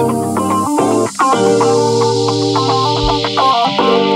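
Guitar-led music played through a woofer wired in series with a 1.7 mH ferrite-core low-pass coil, a listening test of how the coil tames the mids and leaves the bass. The notes change continuously, with no pause.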